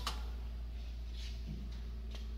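Steady low machine hum with a faint hiss, with no distinct knock or click.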